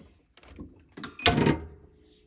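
Heat press being clamped shut by its handle: a soft knock about half a second in, then a louder metal clunk with a short sliding scrape about a second and a quarter in, followed by a faint steady hum.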